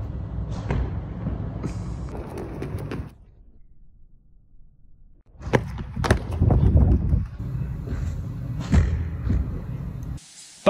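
Wind buffeting a phone microphone on a rooftop, with thuds of feet running and landing on concrete. The sound drops away for about two seconds near the middle, and the thuds come about a second after it returns and again near the end.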